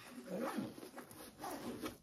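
Zipper on a fabric backpack being pulled, in two strokes, as it is closed over a recording device just placed inside.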